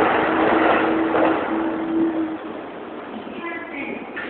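A passing vehicle: a loud, steady rushing noise with a low hum that fades out about two and a half seconds in. A few short higher-pitched sounds come near the end.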